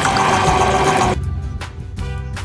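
Film sound effects of an automated car wash spraying and hissing, mixed with music, which cut off abruptly about a second in. Background music with a steady beat follows.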